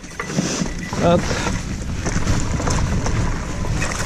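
Wind rushing over the microphone and the tyres of an electric mountain bike rolling over a leaf-covered dirt trail, a steady rushing rumble.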